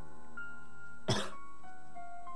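A person coughs once, sharply, about a second in, over steady background music of sustained bell-like mallet tones.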